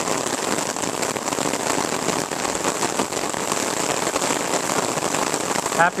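Steady rain falling, a dense patter of many small drops at an even level.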